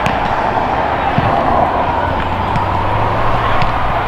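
Footballs being kicked and passed, a few scattered dull thuds, over a steady rushing background noise.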